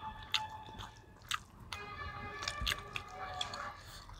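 Chewing and mouth sounds of people eating a rice-and-curry meal with their hands, with a few sharp clicks and smacks.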